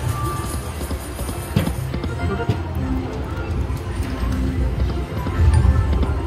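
Video slot machine playing its game music and reel-spin sound effects as the reels spin and stop, with short clicks as the reels land, over a busy casino background.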